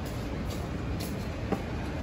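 Steady low rumble of airport terminal background noise, with a short sharp click about one and a half seconds in.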